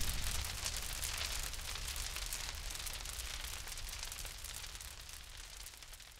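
The tail of a deep boom: a low rumble with a crackling hiss, fading steadily away to near silence by the end.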